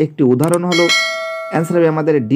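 Subscribe-button notification bell sound effect: a single bright chime a little under a second in, ringing for under a second as it fades.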